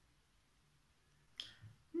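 Near silence, broken about a second and a half in by a short sharp click and a fainter one just after.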